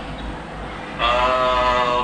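A man's voice coming through a phone's speaker on a video call: one drawn-out syllable held at a steady pitch for about a second, starting about a second in.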